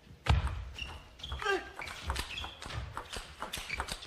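Table tennis rally: the plastic ball clicking off rackets and table again and again, with a heavy thud about a quarter second in and a few short high squeaks among the hits.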